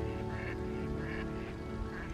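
A bird, most like a duck, giving a series of short quacking calls, about two a second, over steady background music.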